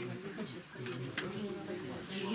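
Low, indistinct voices murmuring in a small room, with a couple of faint clicks about a second in.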